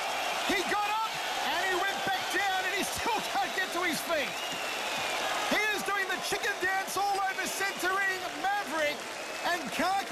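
A man's voice talking over steady arena crowd noise.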